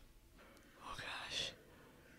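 A person whispering softly, one short breathy stretch starting about half a second in.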